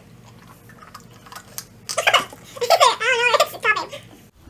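A quiet stretch, then from about two seconds in a person's voice laughing and making wordless sounds.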